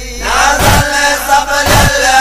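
Men's voices chanting a Sindhi noha, a Shia lament, in a drawn-out melody, with a heavy beat keeping time about once a second.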